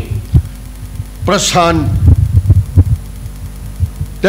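Irregular low thumps and rumble on a handheld microphone, around one short spoken word from a man, loudest just after the word.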